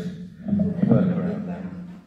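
Speech only: a man's voice talking over the church's microphone.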